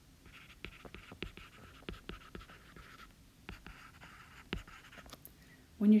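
Faint stylus writing on a tablet screen: light taps and short scratching strokes in two spells, with a brief pause around halfway.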